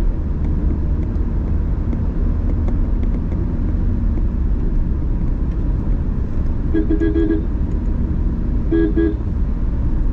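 Steady low rumble of a car driving on a paved road, heard from inside the cabin. A car horn toots twice, about seven and nine seconds in, the first toot slightly longer.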